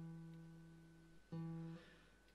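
Acoustic guitar being tuned: a single string rings and fades, then is plucked again at the same pitch a little over a second in.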